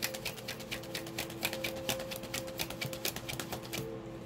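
A deck of tarot cards being shuffled by hand: a quick, uneven run of small card clicks and snaps that stops near the end, over steady background music with a held drone.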